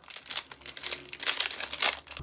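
Foil Digimon Card Game BT-09 booster pack being torn open and crinkled by hand: a fast run of sharp crackles.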